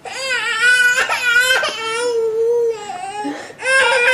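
A baby crying in long, high wavering wails: one cry of about three seconds, a short break, then crying again near the end.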